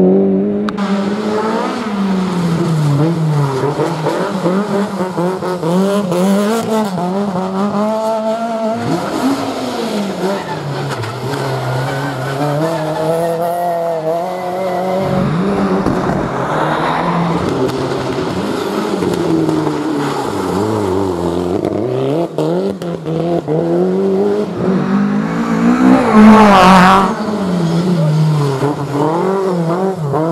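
Rally cars driven hard on a stage, engines revving high and falling back over and over with gear changes and lifts. It is loudest about four-fifths of the way through as a car passes close.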